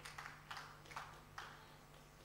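Near silence in a hall, broken by about four faint, short clicks over the first second and a half.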